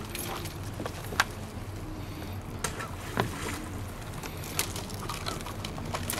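Crabs being handled out of a ring net on wooden pier boards: about half a dozen sharp clicks and taps of shell and net against the deck, over a steady low hum.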